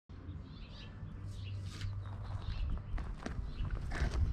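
Outdoor ambience with birds chirping over a steady low rumble. From about three seconds in, gravel crunches and clicks as a person shifts and slides out from under a truck.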